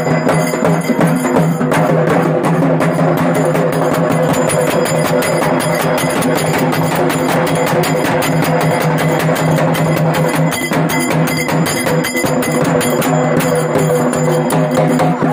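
Live festival drumming: fast, dense drum strokes played without a break, over a steady held droning tone.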